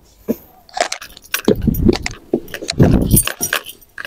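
Knocks, rustles and light clinks of a person climbing into a van's rear cabin through the sliding side door, brushing past the leather seats. Two heavier low thuds come in the middle, as she steps up and shifts her weight inside.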